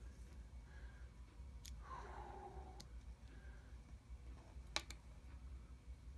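A few faint, sharp clicks of small watch parts being handled and set down on a bench mat, including a quick double click near the end, over quiet room tone.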